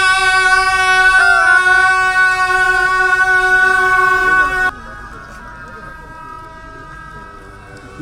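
Gyaling, Tibetan double-reed horns, sounding a loud, steady held note with a brief wobble in pitch about a second in. The loud note cuts off abruptly about halfway through, leaving fainter reedy tones.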